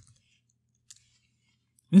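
Quiet room tone with two faint single clicks from computer keyboard or mouse use, one at the start and one about a second in.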